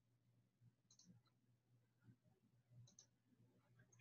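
Near silence: faint room tone with a low hum, and a few faint clicks about a second in and again near three seconds.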